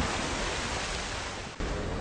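Cartoon sound effect: a steady rushing noise that fades slowly, with a brief dropout about one and a half seconds in before it picks up again.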